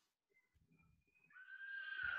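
Near silence, then about a second and a half in a person's high-pitched, drawn-out vocal exclamation over a video call, sliding down in pitch, like an excited squealed "yeees".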